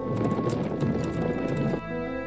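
Horses galloping, a dense clatter of hooves over faint music, giving way to sustained music just before the end.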